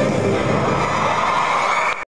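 A live band's closing chord and cymbals ringing out, blending into a crowd cheering, then cut off suddenly at the end.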